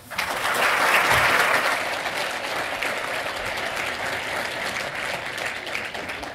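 Audience applauding. It starts all at once, is loudest about a second in, then slowly dies down.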